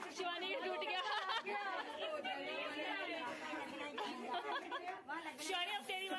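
Indistinct chatter of a group of people talking over one another.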